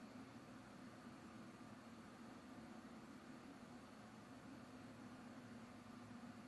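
Near silence: faint, steady room tone with a low hum and hiss.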